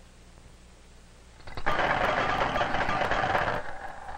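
Dense, rapid clattering of many small metal balls colliding in a mechanical gas model. It starts abruptly about a second and a half in and stops suddenly shortly before the end, over faint film hiss.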